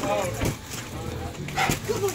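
A dog barking: one short bark at the start and a sharper one about one and a half seconds in.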